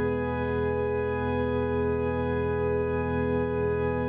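Organ holding one steady, unchanging chord.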